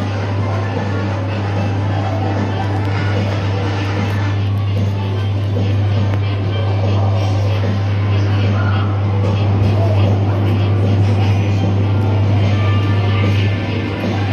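Coin-operated kiddie rides running, playing music over a steady low hum.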